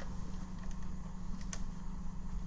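Light handling clicks from the CPU socket's retention latch of a desktop computer being worked open, with one sharp click about one and a half seconds in, over a steady low hum.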